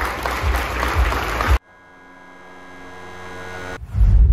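Audience applause that cuts off abruptly about a second and a half in. A steady chord of sustained tones follows, swelling in loudness: the opening of a logo jingle.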